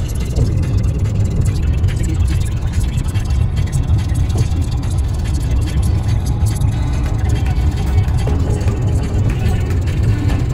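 Steady low rumble of a car driving at highway speed, heard from inside the cabin: road and engine noise.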